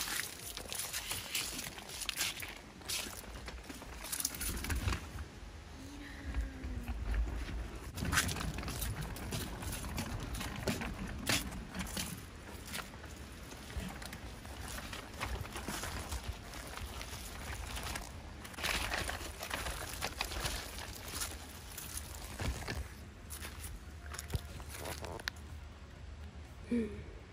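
A lightweight doll stroller being pushed over a wooden deck and then across grass and dry leaves. Its frame and wheels give irregular clicks and rattles over a soft rustling, with a low rumble a few seconds in.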